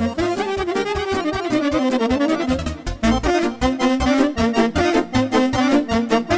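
Soprano saxophone, alto saxophone and accordion playing a lively instrumental passage of Romanian party music in unison, over a steady quick rhythm.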